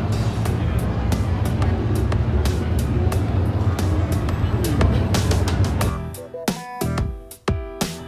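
Background music with a steady beat over the noisy din of a crowded exhibit hall; about six seconds in, the hall noise cuts out suddenly and the music carries on alone.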